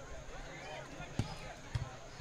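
Scattered voices of players and spectators calling out during a soccer match. Two dull thumps come through, one about a second in and another just over half a second later.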